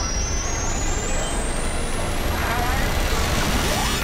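Trailer-style build-up under a countdown: a deep continuous rumble beneath a high tone that climbs steadily in small steps, with snatches of voices mixed in.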